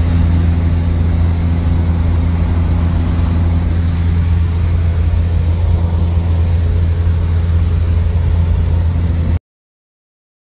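A light aircraft's piston engine and propeller droning steadily, heard from inside the cabin; the drone cuts off suddenly about nine seconds in.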